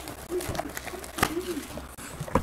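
Plastic wrapping on a sealed trading-card box crackling and clicking as hands work at tearing it open, with one sharp louder click about a second in. A couple of short, low rising-and-falling tones sound alongside.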